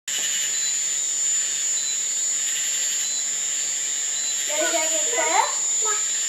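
A steady high-pitched whine throughout, with a person's voice exclaiming, rising in pitch, from about four and a half seconds in.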